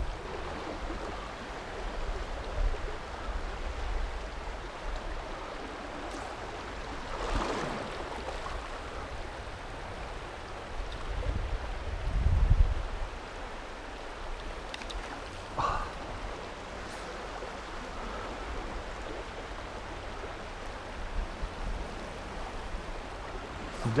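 Steady rush of a swollen river's current flowing close by. A few low thumps come a little past the middle.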